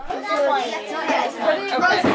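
Chatter of children's voices, several talking at once.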